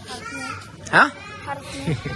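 Speech only: a child's brief spoken answer, ending in a drawn-out vowel.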